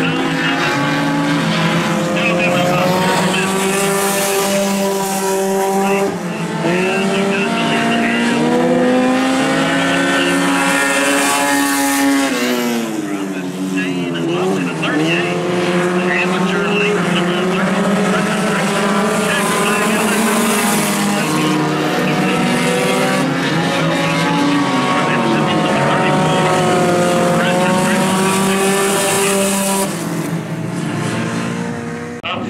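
Several four-cylinder dirt-track race cars running laps together, their engines rising and falling in pitch as they accelerate and lift for the turns. About halfway through, the engine note drops steeply and climbs again as a car slows into a turn and powers out of it.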